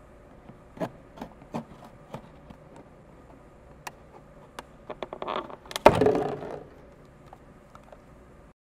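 Craft knife cutting through a thin PET plastic juice bottle: scattered clicks and crackles of the plastic, with a louder burst of crinkling about six seconds in as the top section comes away.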